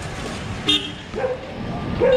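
A short, sharp sound about two-thirds of a second in, then a vehicle horn that starts in the second half and settles into a steady note, with street traffic noise underneath.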